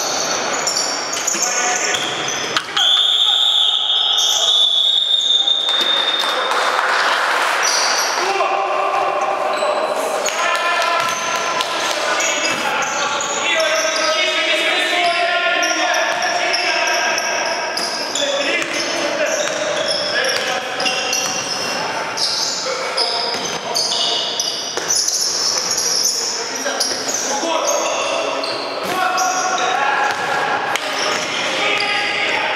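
A basketball game in a large gym hall: the ball bouncing on the court and players calling out. About three seconds in, a referee's whistle gives one long, steady blast lasting nearly three seconds.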